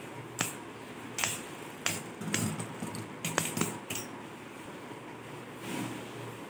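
Two Beyblade Burst spinning tops clashing inside a plastic stadium: a series of sharp plastic clacks over the first four seconds as they knock into each other and the wall, then quieter. A brief soft rustle near the end as a launcher is handled.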